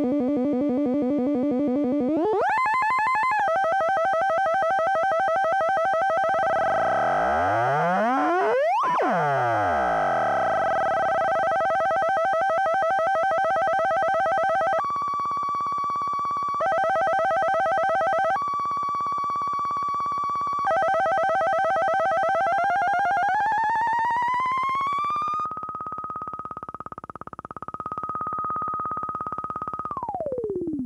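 SVF-1 Eurorack state-variable filter in its less polite mode, its clipping resonance driven by a very low-frequency square wave: a loud, buzzy synth tone that steps and glides in pitch with a swooping sweep near the middle. For several seconds it alternates between two pitches like a dub siren, then glides up and holds a high note.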